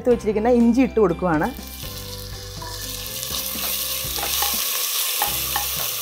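Crushed ginger-garlic paste sizzling in hot ghee with whole spices in a steel pressure cooker, stirred with a wooden spatula; the sizzle starts about two seconds in and grows steadily louder.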